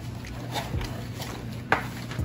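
Cardboard packaging and a plastic Iron Man helmet toy being handled as the helmet is worked out of its box, with one short sharp sound near the end.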